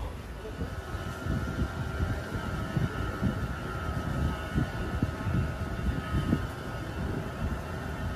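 Open-sided electric shuttle tram riding along: low rumble and buffeting of the ride, with a steady whine from the drive that sags slightly in pitch.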